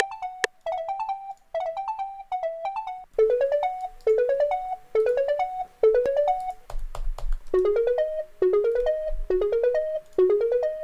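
Synth pluck melody from a Serum pluck patch, playing back as a short repeating pattern of quick notes. About three seconds in, a quick rising run of notes enters and repeats over and over.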